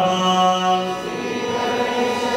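A group chanting a Hindu devotional mantra together in kirtan. A long held note gives way about a second in to softer singing.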